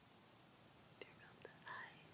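Near silence: room tone, with two faint clicks and a brief soft whisper near the end.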